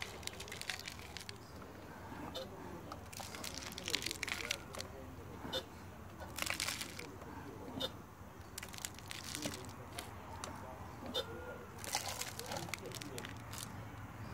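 Gritty potting mix with perlite sprinkled by hand over a plastic seed tray: a crunching, rustling hiss in about five bursts of a second or so each.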